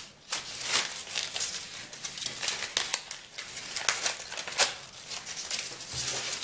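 Kraft paper pattern strips held down with adhesive tape being peeled off and gathered by hand: irregular crackling and rustling of stiff paper.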